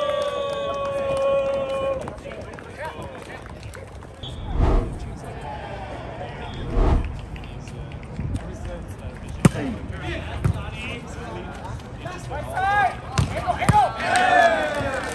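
A volleyball game on asphalt. A long shout from a player in the first two seconds, then two dull thumps a couple of seconds apart as the ball is bounced on the pavement. A sharp smack of the ball being struck comes about nine and a half seconds in, followed by a lighter hit and players calling out near the end.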